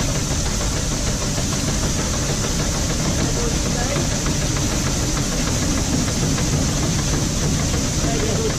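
Tractor engine idling under a steady rush of grain pouring from a tipped trailer into a steel hopper, with the hopper's electric auger running.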